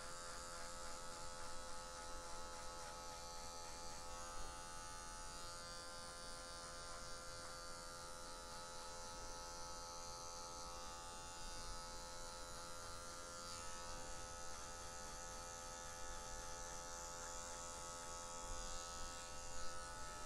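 Electric hair clipper fitted with a number 1 guard, running with a faint, steady buzz as it cuts a marking line into short hair.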